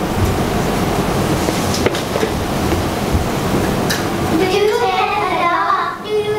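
Steady loud rushing noise with a couple of faint clicks; children's voices come in about four and a half seconds in.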